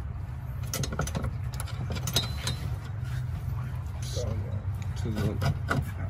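Scattered short knocks and clicks of metal parts as a coilover strut is pushed up into a car's strut tower, over a steady low hum.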